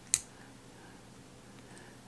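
One short, sharp click right at the start, then quiet room tone.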